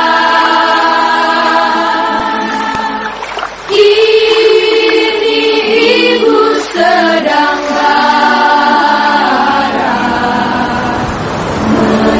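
Soundtrack music of choral singing, voices holding long notes, with a new, louder phrase beginning about four seconds in.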